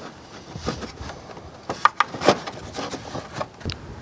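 Plastic air filter housing being worked into place among engine-bay parts: light rubbing and knocking, with a few sharp clicks from a little before the middle onward.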